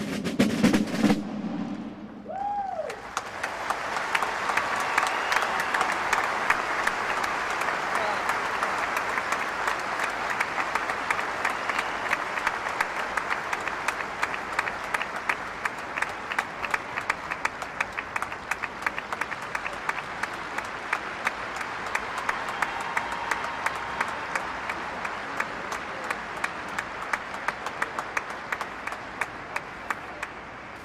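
A last burst of Basel drumming stops about a second in. Then a stadium audience applauds steadily for the rest of the time, thinning slightly near the end.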